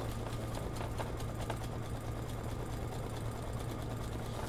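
Embroidery machine running a satin stitch: a steady hum with fast, light ticking of the needle.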